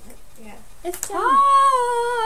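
One long, high-pitched vocal call about a second in, rising at first and then held.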